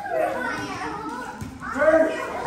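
Children's voices at play: a high rising cry at the start and another call near the end.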